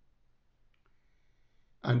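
Faint room tone with a soft click and a thin, faint tone lasting about a second, then a man's voice begins near the end.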